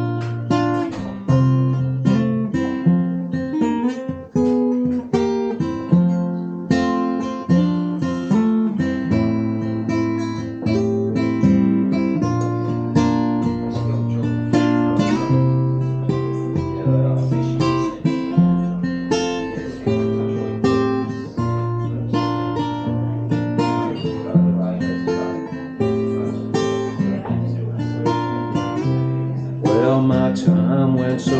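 Acoustic guitars playing an instrumental break between sung verses: strummed chords with picked notes ringing out in a steady rhythm.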